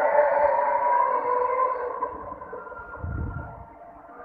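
Fajr azan, the Islamic call to prayer, chanted by a muezzin: one long held phrase that wavers and slowly falls in pitch, fading out near the end. A brief low rumble comes about three seconds in.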